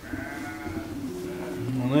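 Edilbaev sheep bleating in the barn: a faint, drawn-out bleat in the first second, with louder calls coming in near the end.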